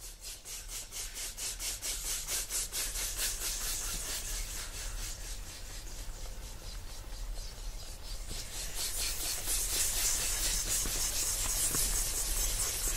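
Rhythmic rasping, scratchy noise that fades in pulsing several times a second, then thickens into a denser, brighter hiss in the second half.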